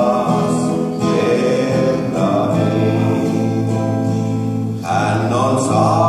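A man singing a slow song into a microphone to his own strummed acoustic guitar, with a brief break between phrases about five seconds in.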